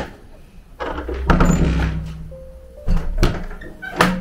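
Dull thumps about a second in and again near three seconds, over a low rumble, with faint steady music-like tones in the background from about halfway.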